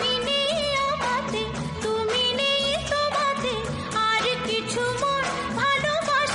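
Bengali film song: a high female voice sings a wavering, ornamented melody over a continuous instrumental accompaniment.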